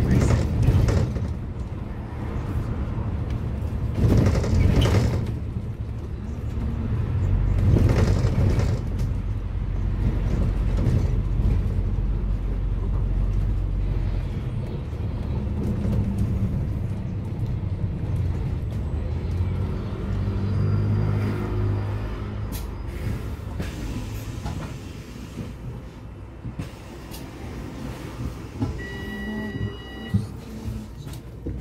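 Engine and road noise inside a moving London double-decker bus: a steady low rumble with louder swells, and a short high beep near the end.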